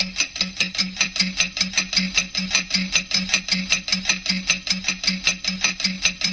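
Clock ticking, fast and even at about five ticks a second, each tick a sharp click over a short low knock.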